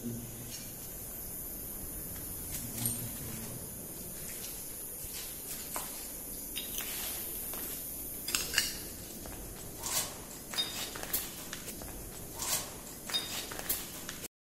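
A low voice briefly near the start and again about three seconds in, then footsteps and a run of short sharp clicks and knocks, loudest in the second half, as people walk along a bare concrete corridor.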